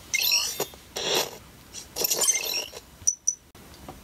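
Living.AI EMO desktop robot making its wake-up sounds as it powers on from its charger: three short bursts of high electronic chirps, then two quick high beeps about three seconds in.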